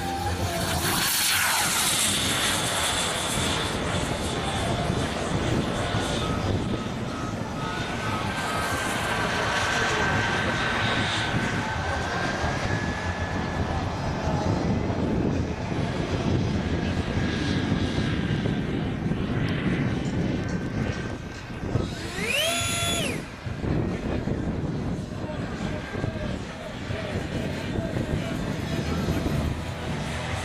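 Radio-controlled model jet's turbine engine in flight: a steady rushing jet noise with a thin high whine that glides slowly in pitch, swelling and fading as the plane passes. About two-thirds of the way through comes a brief high whistle that rises and falls.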